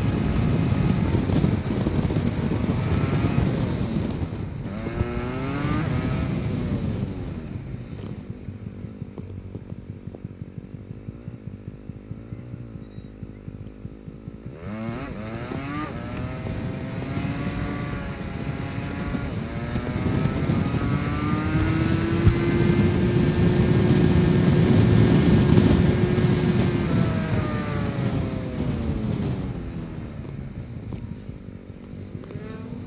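Honda Biz's small single-cylinder four-stroke engine under way in traffic: it speeds up, drops back to a quieter low drone for several seconds about a third of the way in, pulls away again, holds a steady pitch, and slows near the end.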